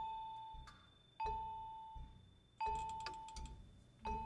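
Vibraphone playing one high note, struck about every second and a half; each stroke rings out and slowly dies away. A faint, softer tap sounds between the strokes.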